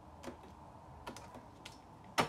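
Tarot cards being handled and drawn from the deck, giving a few faint, sharp clicks and taps: one about a quarter second in and three more in the second half.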